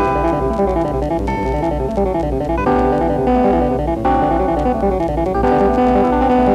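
Synthesizer playing back a score entered into the Mockingbird notation program: fast, even running sixteenth-note figures in the bass, with held chords coming in above them three times, about every second and a half.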